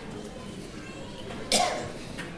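A person coughing once, sharply and loudly, about one and a half seconds in, over a low murmur of voices.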